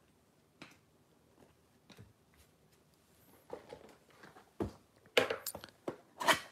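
Soft, scattered taps and rustles of trading cards and a cardboard box being handled, growing into a louder cluster of handling noises near the end as the box is opened.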